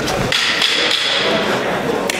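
Sharp knock of grappling fighters' bodies on a cage mat, over steady crowd noise, with a high held shout from the crowd for about a second.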